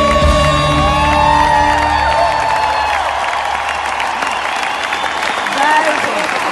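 Live concert music in a large arena: a singer holds long notes over the band, the music ends about halfway through, and the crowd then claps and cheers.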